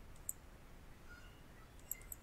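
Faint computer mouse clicks, two of them: one about a third of a second in and another near the end.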